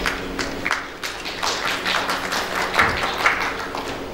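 Applause from a small audience: scattered, irregular hand claps, each one distinct.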